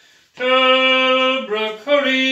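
A man singing unaccompanied: after a brief pause he holds one long, steady note for about a second, then moves through a few shorter notes at changing pitches.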